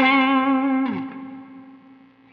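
Electric guitar, a Fender Custom Shop 1961 Stratocaster with Klein Epic Series 1962 pickups through a Two-Rock Silver Sterling Signature amp: a single sustained note with vibrato that slides down in pitch about a second in and fades out.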